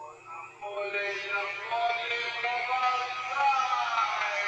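Several voices shouting together in long, wavering calls, growing louder about a second in.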